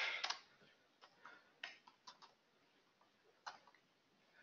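Computer keyboard keystrokes: a handful of faint, irregular clicks as a few characters are typed.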